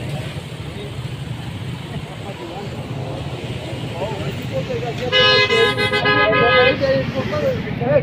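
A vehicle horn gives one steady blast of about a second and a half, about five seconds in, over steady low street noise.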